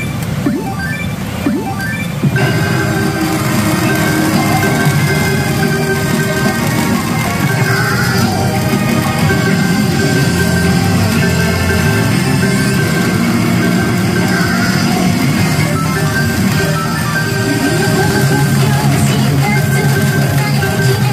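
Pachinko machine playing its music and sound effects, over the dense din of a pachinko parlor. The sound steps up louder about two seconds in.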